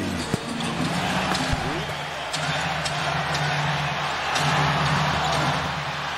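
Basketball arena game sound: steady crowd noise with a few sharp knocks of the ball bouncing on the hardwood, over a low steady hum of arena music.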